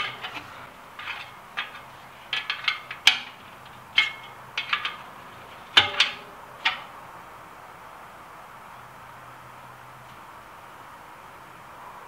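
Light metallic clicks and clinks from truing a bicycle wheel in a truing stand: a spoke wrench working the spoke nipples, one or two with a short ring. The clicks come in a scattered run over the first several seconds and stop for the rest.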